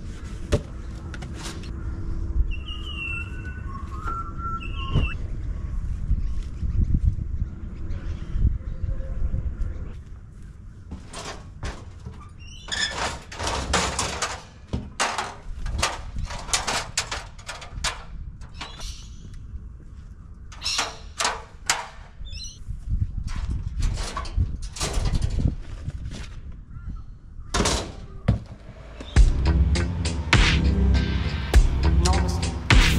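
Irregular knocks and clunks of garden tools being handled, with footsteps, from about a third of the way in. Before that, a low steady rumble and a few short bird chirps.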